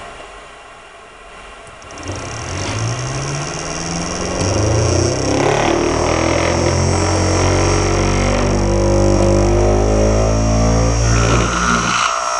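Simple electric motor from a hobby kit starting about two seconds in, its buzzing whine rising in pitch as the rotor speeds up, then holding a steady speed.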